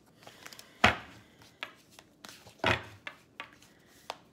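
Two sharp knocks on a tabletop, one about a second in and a louder-bodied one near three seconds, with a few lighter taps and clicks between them.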